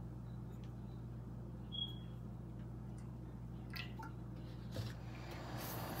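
A low steady hum with a few faint clicks and taps, and a short soft rustle near the end.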